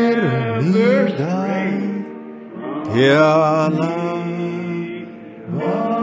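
A man singing a slow hymn tune alone, holding long notes with slow slides between them and a brief dip in loudness between phrases.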